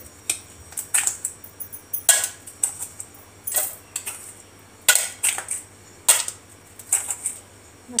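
Ice cubes clinking as they drop one by one into a stainless-steel mixer-grinder jar, with about a dozen sharp clinks at uneven intervals.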